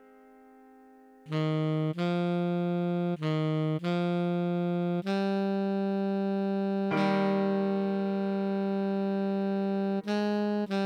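Alto saxophone melody played note by note at a moderate tempo. After a fading note, it starts about a second in and moves stepwise up and down through written C, D, C, D and E, ending on a long held E.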